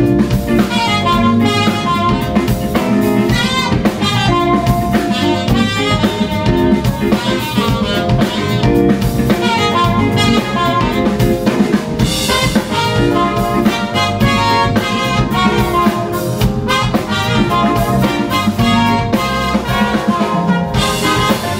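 Live smooth jazz band playing: trumpet and saxophone carry the melody over drum kit, bass, keyboards and guitar, with a steady beat.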